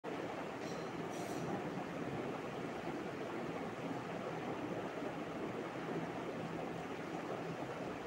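Steady, even background noise with no distinct events, like room or fan noise.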